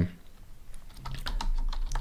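Computer keyboard typing: a string of quick, irregular key clicks as a word is typed.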